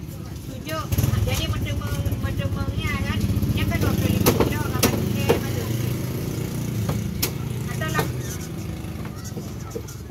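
A vehicle engine running close by, a low rumble that comes up about a second in and eases off near the end. Over it come several sharp knocks of a cleaver on a wooden chopping block, and voices in the background.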